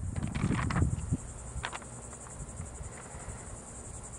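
Insects chirring steadily outdoors: a high-pitched, rapidly pulsing drone. A low rumble sits beneath it in the first second.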